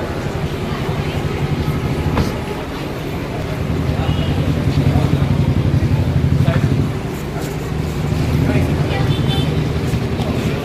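A car engine idling close by, a steady low hum that swells for a few seconds in the middle, with the chatter of people in a crowd over it.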